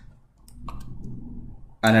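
A few quick computer mouse-button clicks about half a second in.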